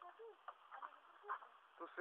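Quiet background with faint voices and a few soft clicks; clear speech begins near the end.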